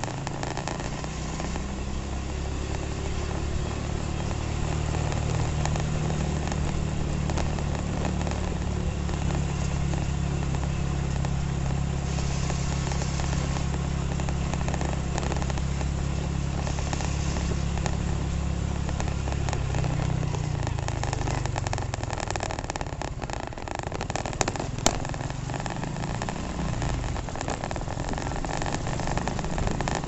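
Honda Revo FI's single-cylinder four-stroke engine running at a steady cruising speed. Its note falls about two-thirds of the way through as the bike slows, and two sharp clicks follow shortly after.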